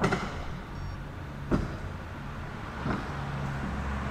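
Sectional garage door rolling up, with sharp clacks near the start, about a second and a half in and about three seconds in, over a low steady hum.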